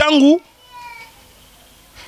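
A man's voice in a short, emphatic, high-pitched exclamation. It is followed by a faint, brief descending cry in the background, then a pause.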